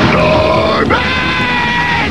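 A cartoon monster character growling and grunting, over background music.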